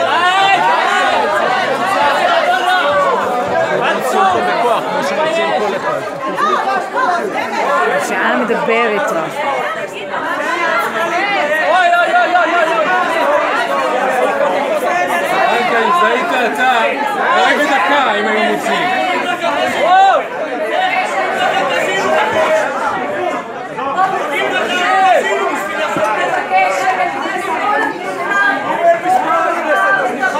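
Many people talking over one another at once: a continuous din of overlapping voices, too tangled to make out single words.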